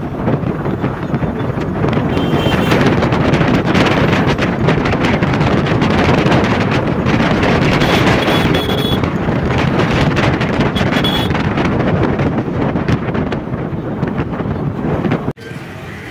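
Wind rushing over the microphone of a Suzuki scooter ridden at speed, with road and engine noise underneath, steady and loud. It cuts off suddenly near the end.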